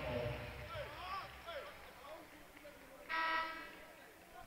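Basketball arena horn sounding once, a short buzz of about half a second about three seconds in, over the murmur of the crowd. It is the horn that calls a substitution during the jump-ball stoppage.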